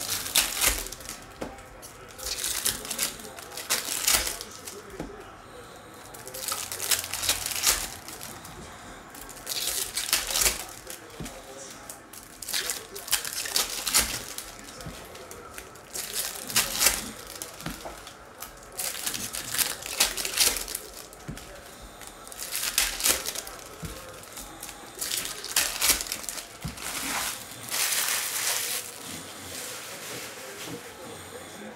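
Trading-card pack wrappers crinkling and tearing as packs are ripped open by hand, in bursts every two to three seconds.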